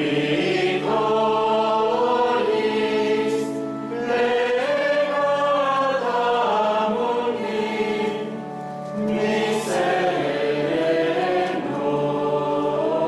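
Choir singing liturgical chant in a sung Mass, several voices moving together over low notes held steady beneath. The singing goes in phrases, with short breaths about four and nine seconds in.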